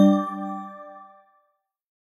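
Final chime of a short logo jingle, a bright ding with several pitches ringing out and fading away within about a second and a half.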